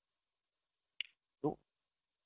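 Dead silence, broken about a second in by a single sharp click and, half a second later, a brief vocal sound from the presenter.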